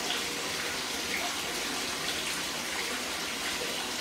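Corner spa bath filling with water: a steady rush of running water with small splashes.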